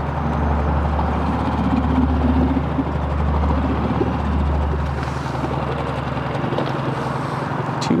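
A boat's motor running steadily, a constant low hum with a wash of noise over it.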